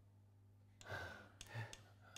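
A person's sigh: a short breathy exhale about a second in, followed by a couple of faint clicks, over a low steady hum.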